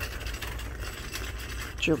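Steady low rumble and hum of a large store's background noise, picked up by a handheld camera's microphone while walking. A spoken word begins right at the end.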